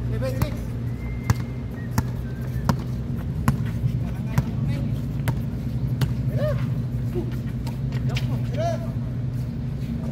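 A basketball bouncing on a hard outdoor court, repeated bounces roughly once a second, over a steady low hum.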